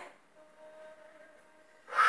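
Near silence: quiet room tone with a faint steady tone.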